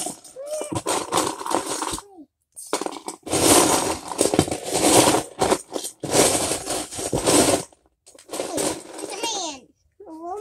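Loose Lego bricks clattering as hands rummage through a plastic tub of pieces, in a few long rattling stretches, with short vocal sounds near the start.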